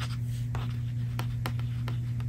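Light scratching on paper, then a few sharp taps or clicks, about four in two seconds, from a paper book being handled. A steady low hum runs underneath.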